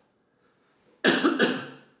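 A man's short, loud cough about a second in.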